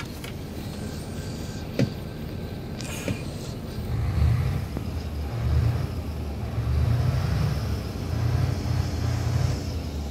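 Diesel engine of a Neoplan Skyliner double-deck coach running with a deep rumble. From about four seconds in it is revved in a series of swells about a second apart, showing off its grunt.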